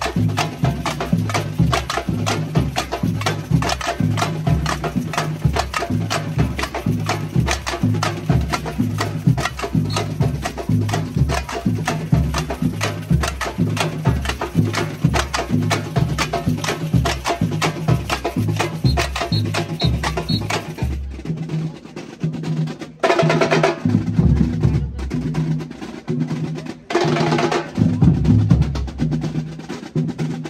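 Samba percussion band playing a batucada groove: deep surdo bass drums under dense snare-drum and tamborim strokes. About two-thirds of the way through, the busy high rattling drops out and the band plays a break of stop-start accented hits.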